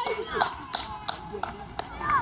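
About six sharp hand claps at uneven intervals, mixed with scattered shouts from players and spectators.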